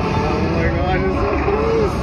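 Arena show sound over the loudspeakers: a performer's amplified voice, with the steady sound of a dirt bike engine running underneath.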